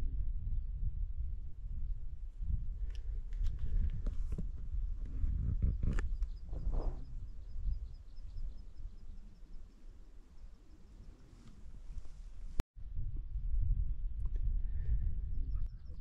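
Low wind rumble on a small camera's microphone, with scattered footsteps and scuffs from a hiker climbing a boggy hillside. It cuts out for an instant about three quarters of the way through.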